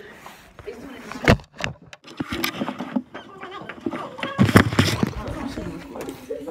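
Teenagers' voices and laughter in the background, broken by several sharp knocks and rubbing on the phone's microphone as it is handled, loudest about four and a half seconds in.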